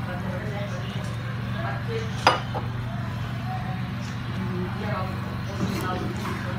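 A steel ladle clinks once against the cooking pan about two seconds in, over a steady low hum.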